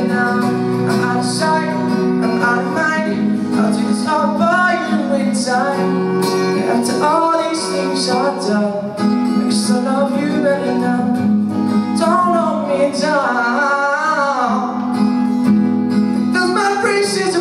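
Male voice singing over a strummed acoustic guitar, performed live into a microphone.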